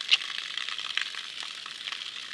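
Steady hissing trickle of spring water, with scattered small clicks and crackles.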